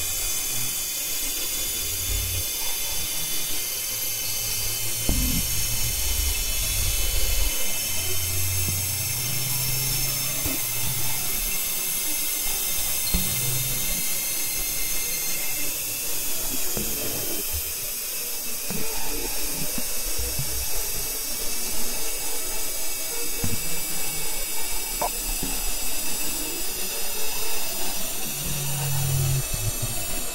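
Experimental electronic music: a bed of high, steady whining tones, with low bass notes that come and go every few seconds and scattered clicks.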